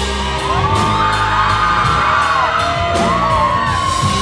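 Live pop-rock band playing on stage, with piano, electric guitar, bass and drums, and a lead melody that slides and bends up and down in pitch over the band.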